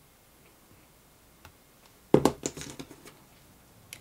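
A sharp knock about halfway through, then a short run of lighter clicks and taps. This is hands handling a plastic glue bottle and small plastic buttons on a tabletop while buttons are layered onto glue.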